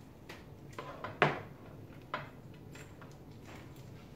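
A few light clicks and knocks of a computer cable being handled and routed behind a monitor on a table, with one sharp knock about a second in.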